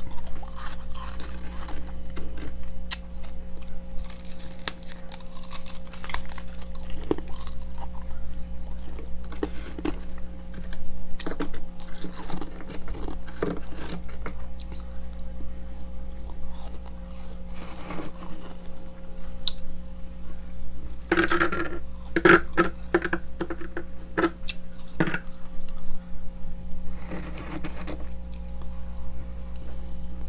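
Close-up crunching of freezer frost being chewed, irregular crunches with a dense run of them about three quarters of the way through, over a steady low hum.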